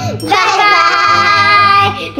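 Children's outro song: a child's voice sings briefly, then holds one long steady note over backing music.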